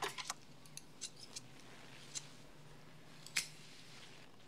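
Barber's scissors snipping hair: a scattered run of short, sharp snips at an irregular pace, the last one the loudest.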